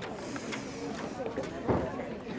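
Faint background chatter of people, with a hiss for about the first second and a short louder sound near the end.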